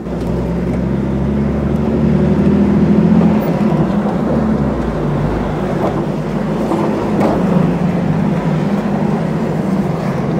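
Jeep engine running steadily at low speed as the vehicle crawls along a sandy canyon floor, a low drone whose note shifts slightly a few seconds in.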